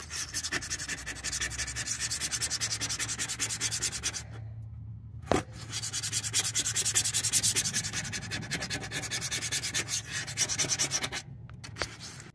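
A scraper blade rubbed over the sink top in quick back-and-forth strokes, cleaning old residue from around the empty faucet holes. The scraping stops for about a second near the middle, where there is a single sharp click, then starts again.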